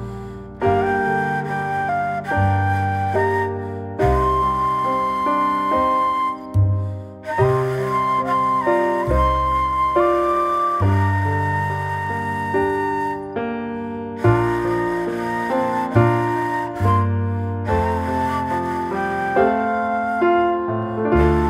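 Instrumental background music: a flute-like melody moving note to note over low sustained bass notes.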